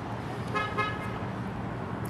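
A car horn sounds once as a faint, steady tone lasting under a second, over a low background rumble of outdoor traffic.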